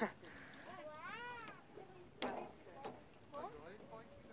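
Faint, distant child's voice: one long call that rises and falls about a second in, then a few shorter calls, with a single sharp tap a little past two seconds.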